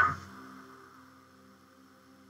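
The tail of a spoken word fading out at the very start, then near silence with only a faint steady hum.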